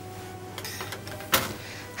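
Quiet studio room tone with a low steady hum, and one short sharp noise about a second and a half in.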